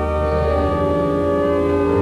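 Romsey Abbey's pipe organ holding sustained chords. The deep bass note drops away about two-thirds of a second in, and a new low note comes in near the end.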